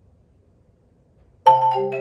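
Near silence, then about one and a half seconds in a marimba quartet starts all at once with a loud struck chord, its notes ringing on as the next notes follow.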